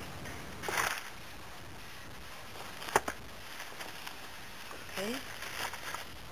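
Cardboard product packaging being handled and opened by hand: a short rustle about a second in, one sharp click or snap around three seconds, and a few small scrapes near the end.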